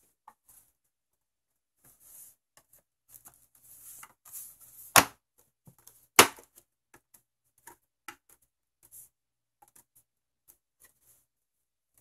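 Plastic snap-fit clips of an RCA DETK185R LED TV's front bezel and back cover clicking into place as the two halves are pressed together. Two sharp snaps about a second apart near the middle stand out among lighter clicks and plastic handling rustle.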